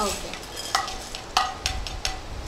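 A spatula scraping roasted chana dal out of a non-stick frying pan into a bowl: the lentils slide and rattle with a soft hiss, and there are a few sharp scrapes.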